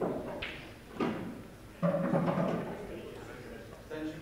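Faint, indistinct voices with a couple of soft knocks about half a second and a second in.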